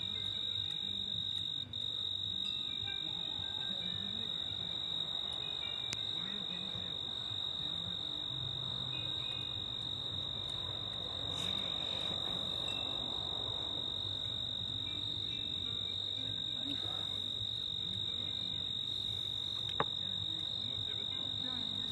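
Crickets trilling in one continuous high-pitched tone, with a faint low hum underneath.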